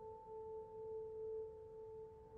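A single faint, sustained note from a background music score, held steady with its octave above and ringing on after the preceding piano music.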